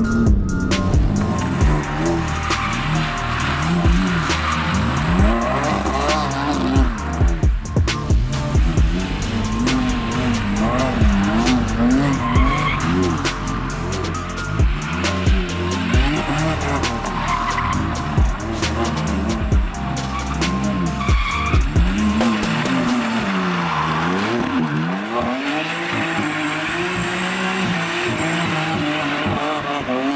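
BMW F80 M3's stage 2 tuned S55 twin-turbo inline-six revving up and down again and again, with tyre squeal as the car slides sideways on wet pavement. Background music plays under it, its bass dropping out about three-quarters of the way through.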